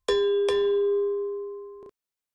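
Subscribe-button notification bell sound effect: two quick bell-like dings about half a second apart, ringing out together and then cutting off suddenly just before the end.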